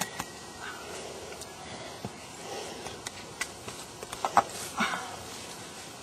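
Scattered rustling and scraping of dry leaf litter and loose limestone, with a few sharper knocks, as a person crawls out through a narrow cave opening; the loudest knocks come about four to five seconds in.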